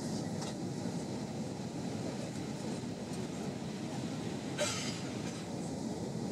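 Steady low cabin drone inside an Airbus A320-232 in flight, the engine and airflow noise heard through the fuselage. A brief scratchy noise about four and a half seconds in.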